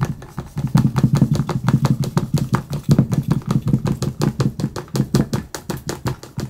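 A homemade octopus rig of plastic figures on wire-hooked jigs, jigged on a line so it rattles and taps rapidly against a table, about seven or eight sharp ticks a second with a low thud in each.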